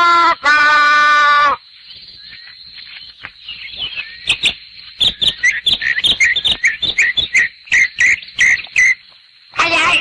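A voice calls out in a long held shout, then a run of short, high, bird-like chirps repeats about two to three times a second, with faint clicks between them.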